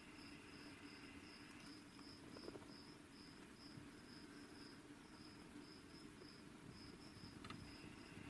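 Near silence with faint insect chirping: a thin, high-pitched pulse repeating about three times a second, with slightly uneven gaps.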